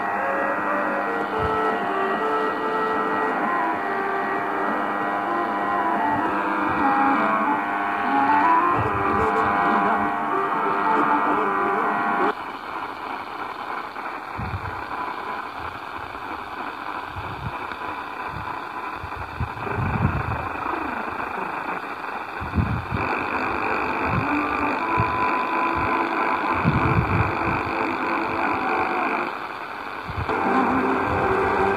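Mediumwave AM broadcasts heard through the small speaker of a Tecsun PL-450 portable receiver as it is tuned across the band. Music plays from the first station and cuts off suddenly about twelve seconds in, giving way to a noisier, hissy signal on the next frequencies, with scattered low thumps.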